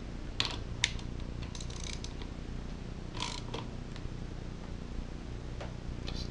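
Hand ratchet clicking in a few short, separate bursts, with a brief scrape of metal on metal, as the 3/8 bolts holding a small engine's engine brake are snugged down.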